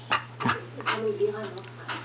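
Small dog whimpering softly for attention, with a short, fairly steady whine about a second in.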